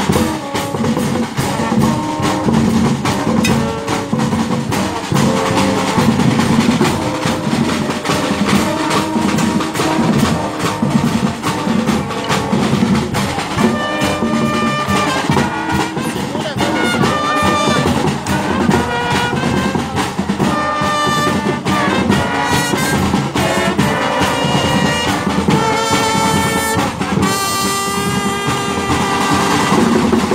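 Marching band playing live: trumpets and trombones carry the tune over bass drums and snare drums beating steadily, with the brass phrases standing out more in the second half.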